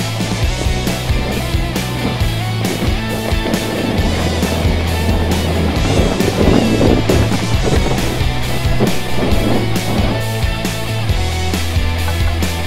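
Background music with a steady beat and bass line. Mixed in, the rolling, rattling noise of a mountain bike's tyres on a dirt and rock trail, strongest in the middle.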